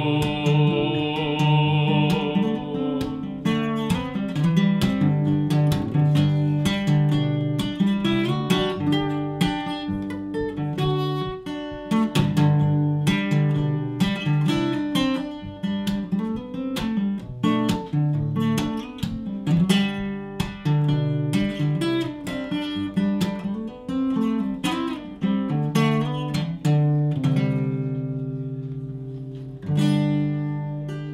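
Steel-string acoustic guitar played solo in an instrumental break, a fingerpicked melody of quick plucked notes over a ringing low note. Near the end the picking thins out and a chord is left ringing and fading.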